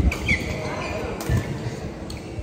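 Badminton play in a large, echoing sports hall: shoes squeak and thud on the court floor, with a short squeak just after the start and heavy thuds near the start and at about a second and a half, and a sharp smack about a second in, over background voices.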